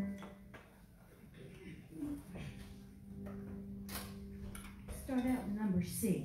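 Scattered light knocks and clatter of people moving about on a stage, with a faint steady tone through the middle and low voices near the end.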